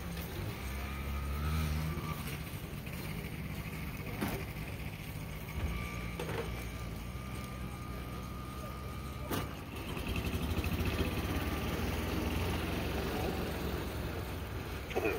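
A motor vehicle's engine running with a steady low rumble, growing somewhat louder about ten seconds in, with a couple of faint knocks.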